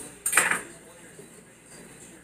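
Kitchenware clattering once, a short sharp clink about half a second in, as something is handled at the kitchen counter.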